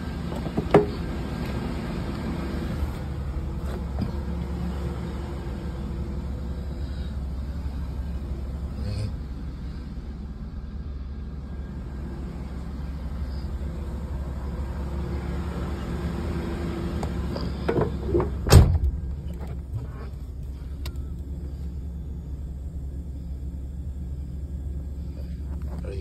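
Chevrolet Caprice engine idling steadily, heard from inside the cabin as a low hum. A single sharp knock sounds about eighteen and a half seconds in, with a few lighter clicks elsewhere.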